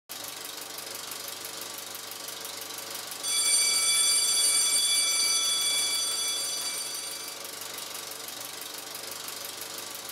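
Film projector clatter sound effect: rapid, even clicking throughout, with a bright ringing chime that comes in about three seconds in and fades away over about four seconds.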